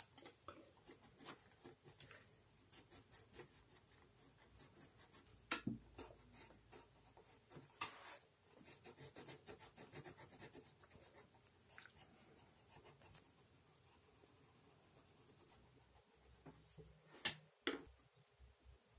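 Coloured pencil scratching faintly on sketchbook paper in many short, repeated shading strokes. A louder sharp clack comes near the end, as a hand reaches among the loose pencils on the desk.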